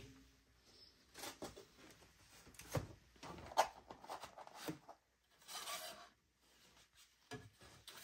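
Thin laser-cut plywood sheets sliding and rubbing against each other and the cardboard box as they are handled, with a few light taps; faint, with one longer scrape about two-thirds of the way in.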